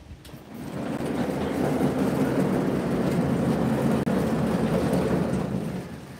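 Portable band sawmill's sawhead travelling along the length of its bed on powered feed. Motor and drive run with a steady mechanical rumble that builds up over the first second, holds, and dies away near the end as the head reaches the end of the track.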